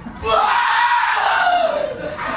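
A performer's long, high acted scream, its pitch arching up and then sliding down near the end.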